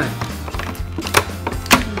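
Stiff clear plastic blister packaging crackling and clicking as it is handled, with a few sharp clicks, over steady background music.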